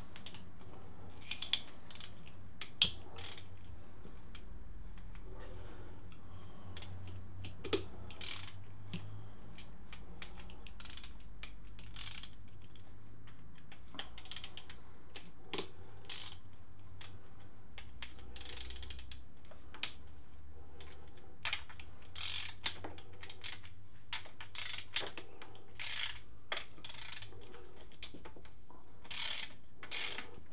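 Socket ratchet clicking in irregular runs as the sump bolts on a motorcycle engine are undone, with a few sharper metallic clinks in between, the loudest about three seconds in.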